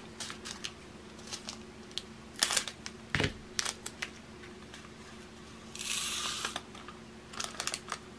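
Small plastic bags of diamond-painting drills crinkling and clicking as they are handled, with a knock about three seconds in as metal scissors are set down on the table, and a brief rustling rush of the bag or its drills near six seconds.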